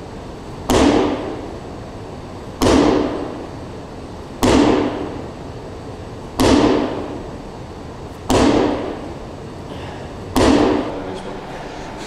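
A medicine ball striking six times, sharp impacts at an even pace about two seconds apart, each followed by a short echo from a large hall.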